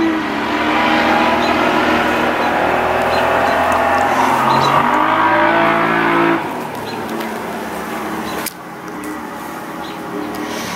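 A motor vehicle's engine being revved, its pitch rising and falling, loud for about six seconds, then dropping away sharply and dropping again near the end.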